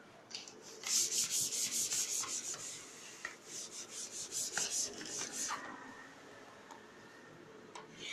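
Blackboard duster wiping chalk off a blackboard in quick back-and-forth strokes, about five a second, in two bursts with a short pause between them.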